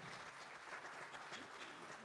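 Faint, scattered applause from a small congregation after a song ends.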